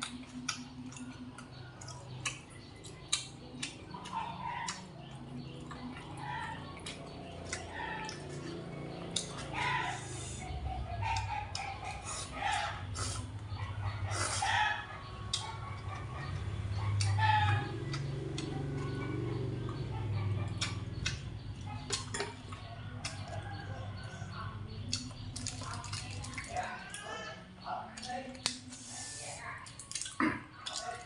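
Eating close to the microphone: chewing and chopsticks clicking against a styrofoam takeaway box of rice noodles, many short clicks scattered through. A low hum runs underneath for about ten seconds in the middle.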